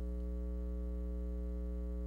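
Steady electrical mains hum, a low drone with a faint buzz of higher tones above it, unchanging throughout.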